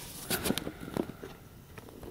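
Handling noise: a few light knocks and clicks in the first second, then quieter rustling.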